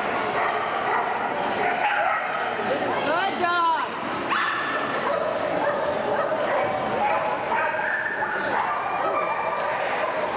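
Dogs barking and yipping over one another, with people talking in the background. About three seconds in, one dog gives a longer, wavering whine.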